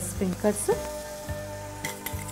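Khichdi sizzling in a steel pot on a gas stove, with steady held tones of background music over it.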